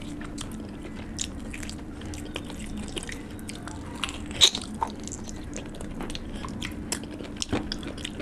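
Close-miked eating of curried meat on the bone by hand: wet chewing, lip smacks and biting at the bone, with many small crackles throughout. One sharp, loud click about four and a half seconds in stands out. A faint steady low hum lies underneath.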